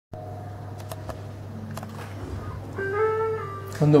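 Electric guitar (a Stratocaster) through an amplifier: a steady amp hum with a few faint clicks from the strings, then one short note about a second long near the end.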